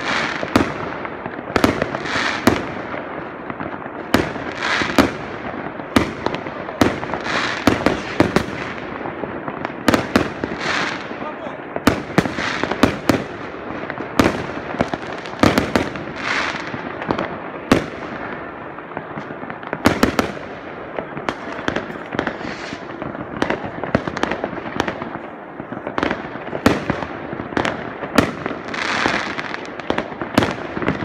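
Fireworks going off continuously: many sharp bangs at irregular intervals, several a second at times, each followed by a crackling tail over a steady rumbling haze.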